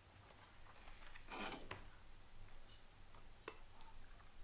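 Near-quiet room tone with a few faint ticks and a brief soft rustle about a second and a half in.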